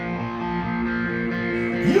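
A sustained chord, played on electric guitar, ringing steadily through a concert PA.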